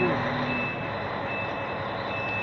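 A truck's reversing alarm beeping twice, about half a second each, over the steady running of the truck's engine during a tight manoeuvre.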